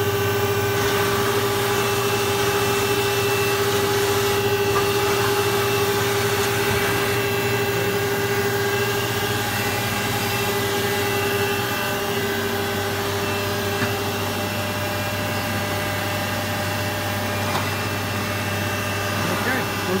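Dahlih MCV-1450 vertical machining center's 50-taper spindle running steadily at its top speed of 6,000 RPM: a constant hum with a steady whine.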